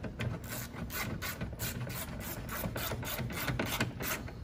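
Hand socket ratchet clicking in a steady run of short strokes, about four clicks a second, as it turns a license plate bolt into the liftgate's threaded insert.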